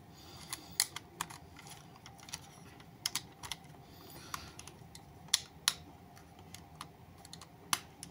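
Irregular light clicks and knocks of a transformable toy jet's parts being handled and pegged together, with a few sharper clicks as pieces seat into their slots.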